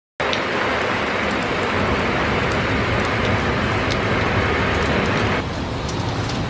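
Heavy rain falling steadily, a dense even hiss with a few sharp ticks of drops. The hiss grows a little duller about five and a half seconds in.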